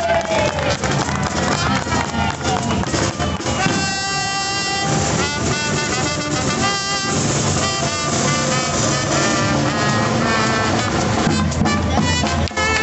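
Brass-band music: trumpets and trombones playing a lively tune in short repeated and held notes over a steady low accompaniment.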